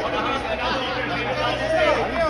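Several voices talking over one another at once, a babble of overlapping speech in a large chamber.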